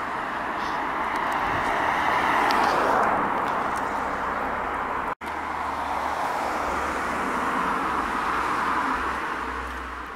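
Road traffic on the street alongside: car tyre and engine noise swells and fades twice, with a momentary dropout of all sound about halfway through.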